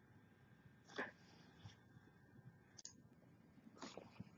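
Near silence, with one faint short click about a second in and a few tinier ticks later.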